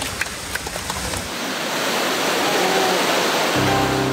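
River water rushing out beneath a newly opened sluice gate, the roar building as the flow strengthens. Background music comes in near the end.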